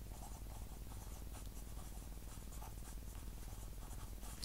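Pen writing a word on squared paper: faint, quick scratching strokes of the tip on the paper.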